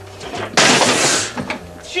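A large CRT television set dropped onto a hard floor: one loud crash lasting under a second, about half a second in.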